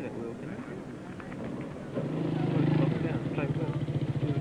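Faint voices, then about halfway in a small motorcycle engine comes in, idling steadily.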